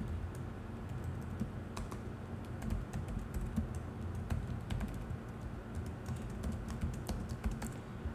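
Typing on a computer keyboard: a run of quick key clicks, thickest in the second half, over a low steady hum.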